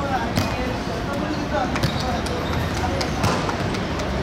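Players' voices calling out across a hard football court, with a few sharp thuds of a ball on the hard ground over a steady low background rumble.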